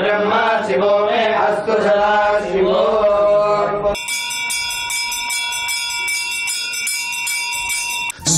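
Men chanting Vedic Shiva mantras. About halfway through this cuts suddenly to a brass temple hand bell rung continuously at an even, quick pace, as it is during an aarti.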